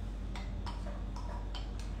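Metal spoon clicking against the inside of a plastic cup as it scoops, about five light, sharp ticks over two seconds.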